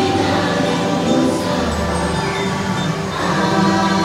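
Choral singing over sustained music from the ride's soundtrack.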